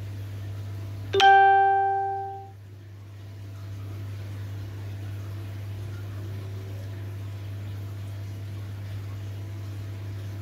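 A single ringing note with a sudden start, like a plucked string or chime, about a second in, fading away over about a second and a half. Under it runs a steady low hum.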